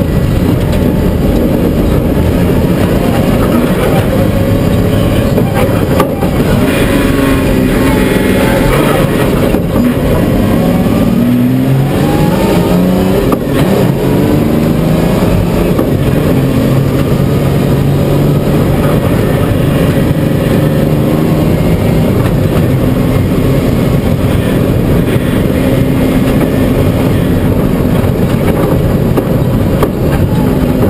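Rally car engine heard from inside the cabin, its pitch repeatedly rising and falling as the car accelerates and changes gear along a gravel road, over steady road and tyre noise.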